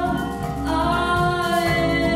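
A woman's voice singing long, held notes with slight pitch glides, a new note starting less than a second in, over a sustained accompaniment from a mallet percussion ensemble.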